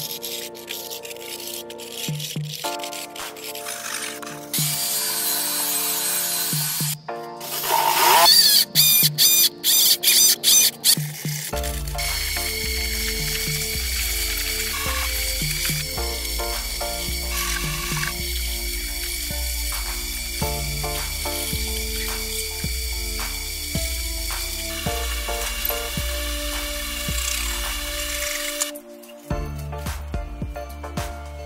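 Background music, joined by a steady low beat about a third of the way in. Before that, a few seconds of rasping handsaw strokes cutting through polystyrene foam.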